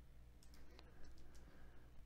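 Near silence with a faint computer mouse click a little before one second in.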